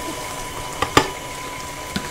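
Electric stand mixer running steadily while an egg is beaten into the batter. A couple of sharp clinks about a second in, the second the louder, and another just before the end, as the small glass bowl knocks against the mixer bowl and is set down.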